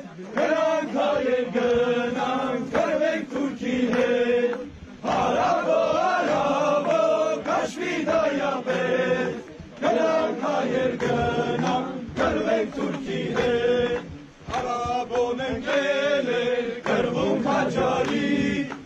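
A group of men singing an Armenian folk song in unison, in phrases of a few seconds with short breaks between them.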